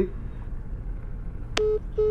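Phone voicemail system beeps: a short electronic tone about one and a half seconds in and a second starting at the very end, over a low steady background hum.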